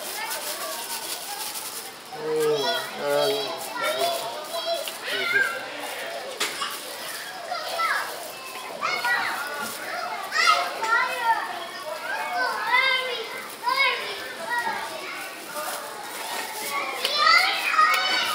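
Children playing and calling out, their high voices rising and falling in overlapping shouts with no clear words. The voices grow louder about two seconds in.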